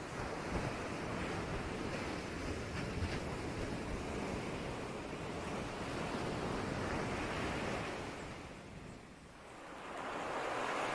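Steady rushing noise like surf, with no tune in it, easing away to a brief dip about nine seconds in before swelling again.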